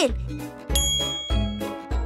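A bright bell-like ding sound effect about three-quarters of a second in, ringing out and fading, over light background music with a bass beat.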